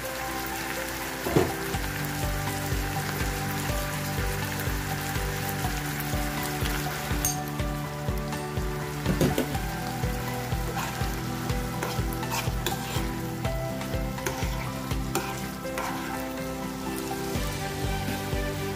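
Beef, onion and sauce sizzling and frying in a nonstick pan, stirred with a spatula, with a couple of louder knocks about a second and a half in and about nine seconds in. Background music with a steady beat runs underneath.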